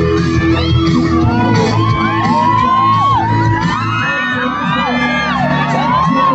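Live amplified music through a stage PA, with a crowd screaming and cheering over it in many overlapping high cries.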